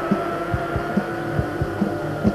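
Live rock band in an instrumental passage with no vocals: the bass drum beats about two to three times a second under a low bass line and one sustained, slightly rising guitar note.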